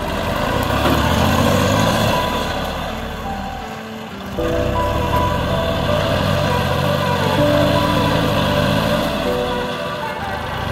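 Massey Ferguson 9500 tractor's diesel engine running as it works a front loader, with music playing over it. The sound dips and then cuts back in abruptly about four seconds in.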